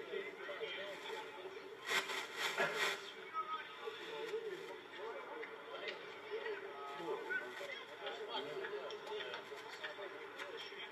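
Faint, distant voices of players and spectators talking and calling out at a rugby league sideline, with a brief louder burst of noise about two seconds in.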